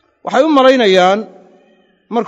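A man's voice holding one drawn-out vowel for about a second, its pitch wavering, then trailing away.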